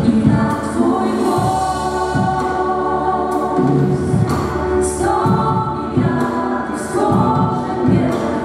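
Live worship song in Polish: a group of men and women singing together into microphones, backed by a band with electric guitar and drum hits throughout.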